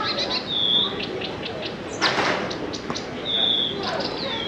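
Recorded birdsong played through a ceiling loudspeaker: two clear whistled notes, about half a second in and again near the end, among short chirps, with a brief rush of noise around two seconds in.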